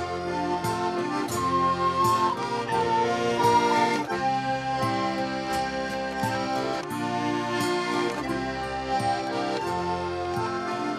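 Instrumental passage of a recorded folk song, with no singing: sustained chords over a steady plucked or strummed beat.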